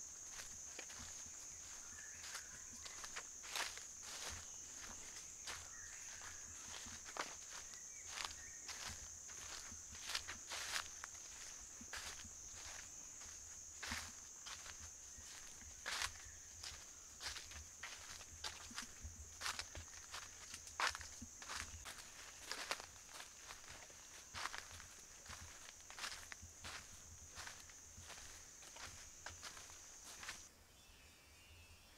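Footsteps crunching and crackling through dry fallen leaves on a forest trail, in an uneven walking rhythm, over a steady high-pitched insect drone.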